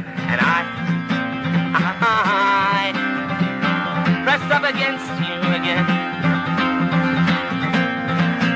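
Instrumental break in a song: steady acoustic guitar strumming, with a higher wavering melody line over it.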